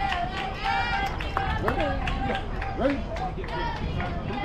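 Several voices of players and spectators talking and calling out at once around a softball field, none of it clear words, over a steady low rumble.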